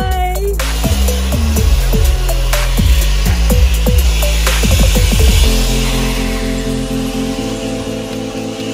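Electronic background music with a heavy beat, over which a countertop blender starts suddenly near the start and runs for about five seconds, grinding green powdered pigment in its jar, before dropping away.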